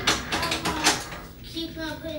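A quick run of clicks and knocks in the first second, followed by a faint voice.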